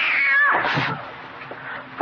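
A cat's yowl, held high and then dropping in pitch with a wavering end within the first second.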